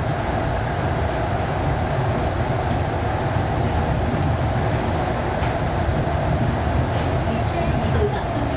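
Airport shuttle train (automated people mover) running at speed through a tunnel, heard from inside the car: a steady low rumble with a hum above it.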